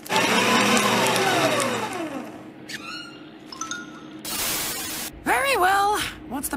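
Cartoon sound effect of a paper shredder running for about two seconds as a sheet is fed in: a loud shredding noise with a falling tone through it. Near the end there is a short burst of noise and a cartoon voice.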